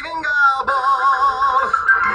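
Music with singing: a voice holds a long note with vibrato over the accompaniment.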